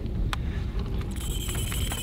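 Line being pulled off a toy push-button spincast reel by a running fish, heard as a faint steady high whine from about a second in, over a steady low rumble of wind on the microphone.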